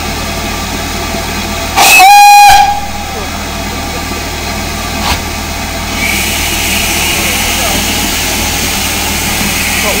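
A short, loud blast on the steam whistle of GWR 'City' class 4-4-0 No. 3717 City of Truro, just under a second long about two seconds in. From about six seconds in, steam hisses steadily and more loudly from the standing locomotive.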